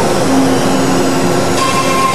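CNC router spindle running and cutting into sheet stock under a brush dust shoe: a steady whine over a loud, even hiss of the cut.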